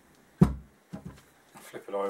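Motorcycle rear wheel hub knocking against the workbench as it is handled and turned over: one sharp thud about half a second in, then a lighter knock. A short voice-like sound follows near the end.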